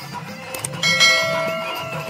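A bell-like tone struck a little under a second in, ringing with several overtones and slowly fading, over the continuing bhajan music.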